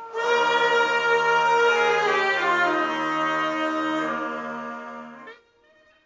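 Polish folk band with violins playing held notes over a steady low drone. Part of the sound slides down in pitch about two seconds in, and the music cuts off about five seconds in.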